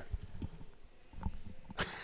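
A pause in a podcast's talk: low room noise with a few faint, short low knocks. A man starts speaking near the end.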